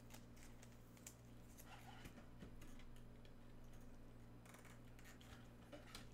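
Near silence: a low steady electrical hum with faint scattered clicks, a few close together around the middle.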